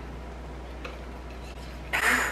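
Quiet kitchen room tone: a steady low hum with a couple of faint, short ticks. The stick blender is not running.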